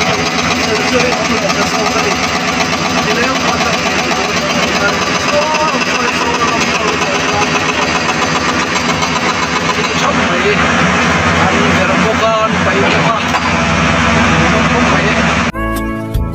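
Diesel excavator engines running steadily under the talk of a crowd of onlookers. Music cuts in suddenly near the end.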